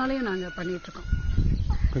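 A chicken calling in the background, one drawn-out note at a steady pitch lasting about a second, over a woman's speech that stops about a second in. A low rumble fills the second half.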